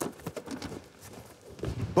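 Footsteps on a hardwood basketball court, with a few sharp knocks about the first half second and softer steps after.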